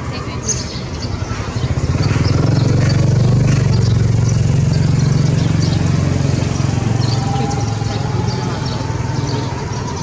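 A motorbike engine running close by, swelling about a second and a half in and slowly fading, over street traffic noise.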